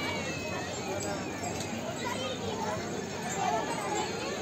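Background chatter of people's voices at a distance, steady and fairly faint, with occasional children's calls.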